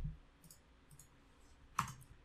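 A few faint, sharp clicks of a computer mouse.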